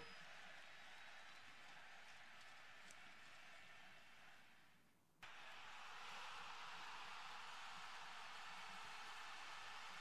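Near silence: a faint steady hiss of background room tone, which drops out completely for about a second midway.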